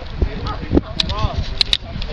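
Indistinct talk from several people, with a few short sharp clicks about a second in and again near the end.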